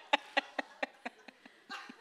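A woman laughing: a run of short laughs, about four a second, trailing off and getting quieter, with a breath near the end.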